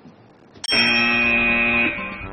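Quiz-show buzzer sounding as a team buzzes in to answer: a click about two-thirds of a second in, then a steady electronic tone for just over a second that fades away near the end.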